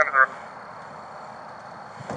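Steady road and engine noise inside a moving police car, after a brief burst of police radio voice at the very start.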